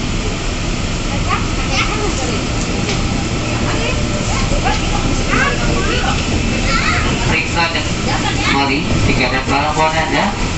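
Steady low rumble of a KAI Commuter electric train running, heard from inside the carriage, with indistinct voices talking over it that grow busier near the end.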